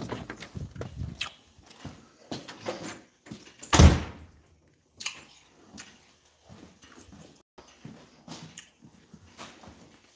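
A door being slid and shut, with a thud about four seconds in, among scattered small knocks and rustles.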